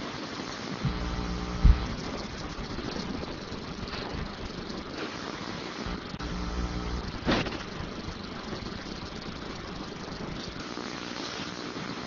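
Steady background hiss broken by two short stretches of low electrical hum, each with a sharp click or knock. The loudest click is about a second and a half in, and the second comes about seven seconds in.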